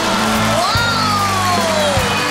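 Stage music with steady low bass notes; about three quarters of a second in, a long sliding note rises, then falls slowly.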